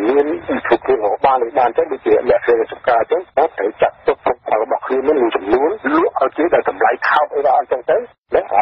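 A voice speaking continuously in Khmer in a radio news broadcast. The voice sounds thin, with no high end, as over a narrow radio or phone line.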